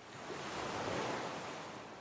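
A rushing, surf-like noise swells up to a peak about a second in and then fades away.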